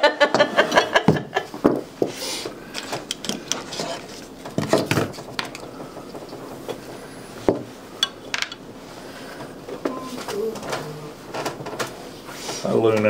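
Laughter, then leather and tools being handled on a hard work table: rustling, light clicks and a few knocks as a granite slab and a fringed oil-tan leather piece are set down and pressed flat.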